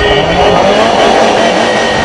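Many car horns sounding at once from a slow convoy of cars, a held blare of several steady tones over engine and traffic noise.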